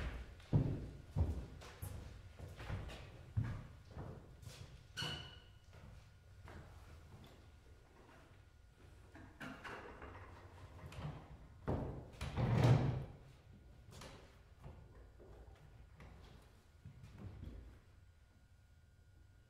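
Footsteps and scattered knocks on a wooden stage floor as a performer walks to a grand piano and sits at its bench, with a louder thud and shuffle about twelve seconds in, then quiet.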